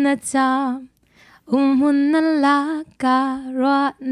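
A woman singing unaccompanied into a microphone in Falam Chin, a slow song in three phrases of long held notes with vibrato, with short breaks for breath between them.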